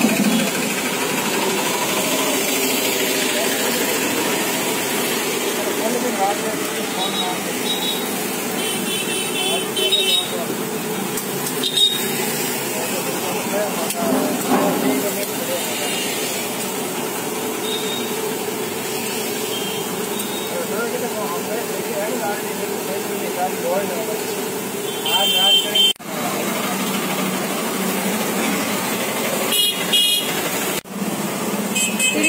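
Malpua deep-frying in a large wok of hot oil, a steady sizzle, against busy street background of voices, vehicle engines and an occasional honking horn.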